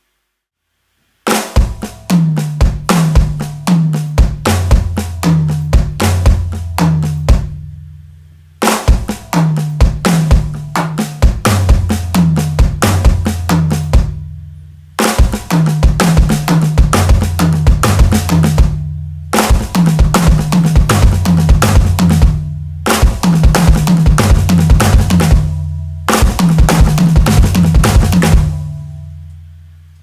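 Electronic drum kit playing a fast sixteenth-note lick of six-note groupings moving around the snare and toms with the bass drum, played about six times with short breaks between.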